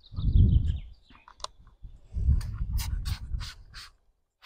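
Trigger spray bottle of glass cleaner spritzing onto a car's side window: about six quick sprays in a row in the second half, under a low rumble that also fills the first second.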